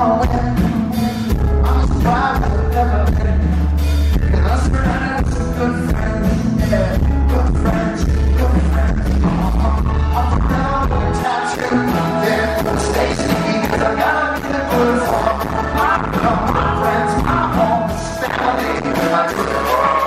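Live rock band playing with a male lead singer, heavy bass and steady drums, heard in a concert hall. About eleven seconds in, the deep bass thins out while the song carries on.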